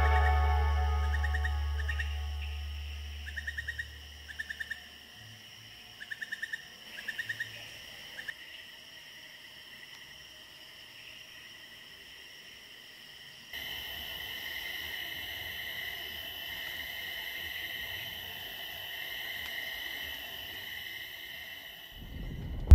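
Background music fading out over the first few seconds, leaving a night-time tropical forest chorus of insects: short chirping trills in clusters over a steady high-pitched drone. A little past the middle it cuts to a louder, denser insect drone.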